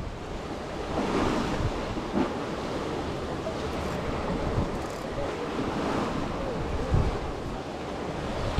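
Sea water washing against a pier with wind buffeting the microphone: a steady rushing noise, broken by a few short dull knocks.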